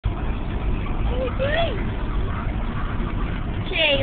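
Car cabin road noise, a steady low rumble, with one short call about a second and a half in whose pitch rises and then falls.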